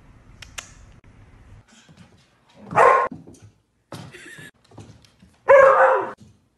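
A dog barks loudly twice, about three seconds in and again near the end, with fainter noises between.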